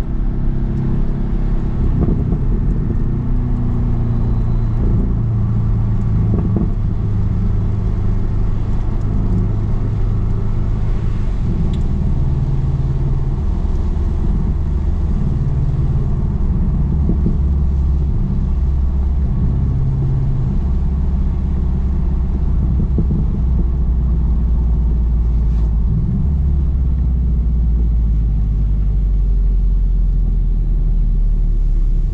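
Porsche 718 GTS engine running at low revs, heard inside the cabin over steady tyre and road noise. Its low drone shifts in pitch in steps and drops to its lowest near the end as the car slows toward the pits.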